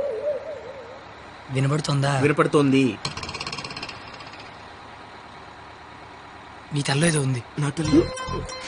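Short wordless vocal sounds from people, with a low steady hum of a bus interior between them and a brief rapid rattle about three seconds in.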